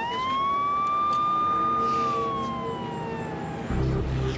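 Police car siren giving one wail: it rises quickly, holds high for about two seconds, then falls slowly and dies away near the end.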